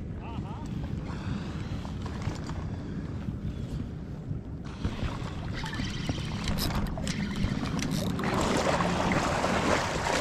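Wind rumbling on an action camera's microphone at the water's edge, with a rushing hiss that swells louder over the last couple of seconds.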